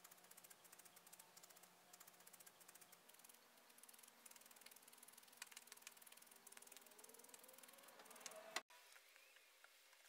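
Faint, rapid ticking of a multi-needle felting pen's barbed needles stabbing loose wool into a small felted figure, with one sharper click about eight and a half seconds in.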